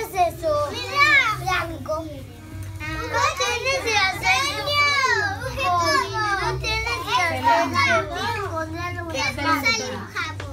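Several young children chattering and calling out at once, high voices overlapping without a break, busiest in the middle.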